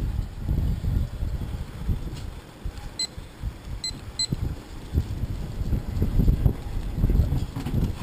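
Three short, high electronic beeps about three to four seconds in, over an uneven low rumble.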